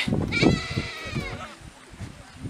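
A goat bleating once: a single wavering call lasting about a second, starting about half a second in.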